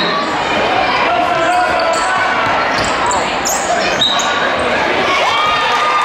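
Live basketball game sound in a gym: a ball bouncing on the hardwood court amid the overlapping chatter and shouts of crowd and players, echoing in the hall.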